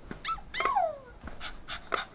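Cookeez Makery plush puppy toy's electronic sound unit playing a string of short, high-pitched puppy yips and whimpers as it is squeezed, one call about half a second in sliding down in pitch.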